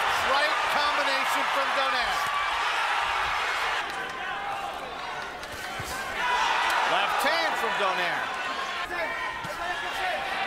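Boxing arena crowd shouting and cheering, many voices at once, loudest at the start and swelling again about six seconds in.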